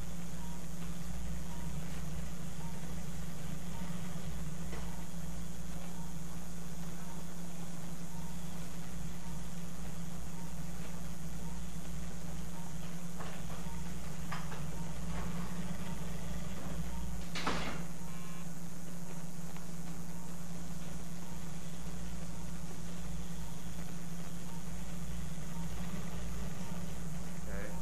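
Steady low mechanical hum of a motorised arthroscopic shaver running while it debrides tissue inside the shoulder joint. Faint regular ticks run under it, and one brief sharp sound comes about 17 seconds in.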